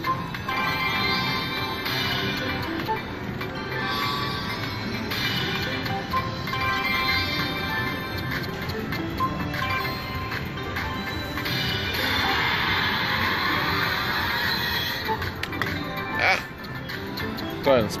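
Crazy Money Gold slot machine playing its electronic spin music and reel-stop chimes over a run of spins, with a busier stretch of sound about two-thirds in and a short rising tone near the end.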